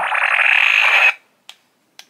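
Power Rangers Dino Knight Morpher toy playing an electronic sound effect from its built-in speaker when its button is pressed and held. The effect cuts off suddenly about a second in, and a short click follows half a second later.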